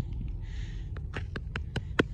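A hand rubbing and tapping the rough surface of a granite boulder close to the microphone. It makes a quickening run of about seven small, sharp clicks and scrapes in the second half, over a steady low rumble.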